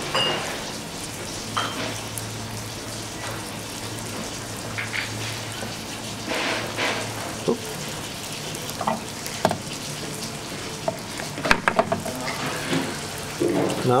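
Cheese heating in a small metal dish over a burner, sizzling with scattered crackles as it melts. Near the end there are a few sharp clicks of a metal spoon and dish being handled.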